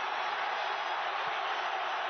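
Stadium crowd cheering a home goal: a steady, dense roar of massed voices, heard through the TV broadcast sound.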